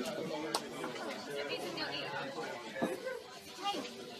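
Several voices chattering over one another, with no single clear talker, and a sharp click about half a second in.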